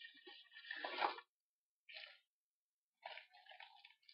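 Faint crinkling and rustling of a padded mailer envelope and a plastic bag being handled as a packaged phone case is pulled out. It comes in short spells: one over the first second, a brief one about two seconds in, and another near the end.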